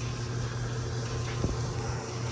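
A steady low machine hum with a faint hiss, and a single faint click about one and a half seconds in.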